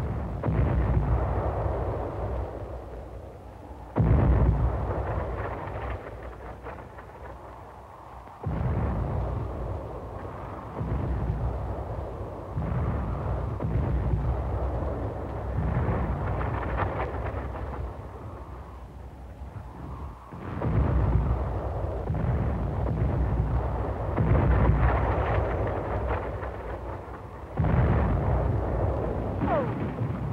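Artillery shell explosions on an old film soundtrack: a heavy blast every three to four seconds, each trailing off in a long, deep rumble.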